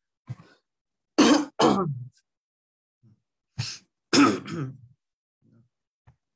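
A person clearing their throat with short harsh coughs, in two bouts: one about a second in and another about three and a half seconds in.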